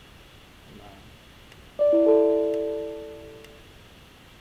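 A short computer sound effect from the typing-tutor program: a chime of a few piano-like notes struck almost together, fading out over about a second and a half. It plays as the typing lesson opens.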